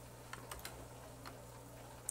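Faint clicks of computer keys: three quick ones about a third of a second in, then one more a little after a second, over a low steady hum.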